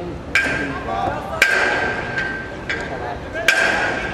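A series of sharp metallic knocks, five in all at uneven spacing, each leaving a short ringing tone at the same pitch, with people talking under them.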